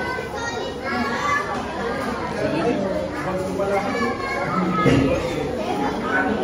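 Several people talking over one another at a restaurant table, with children's voices among them, against the general chatter of the dining room. A louder voice stands out about five seconds in.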